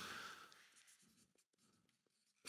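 Near silence, with a few faint ticks from a marker pen being put to a paper flip chart as writing begins.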